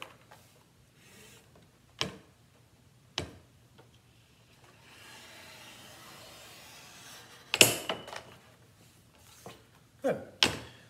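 Straight-line mat cutter trimming a sheet of mat board: a couple of sharp clicks as the board and cutting head are set against the rail, a soft scraping as the blade is drawn through the board, then a loud cluster of knocks from the cutter's metal bar and rail.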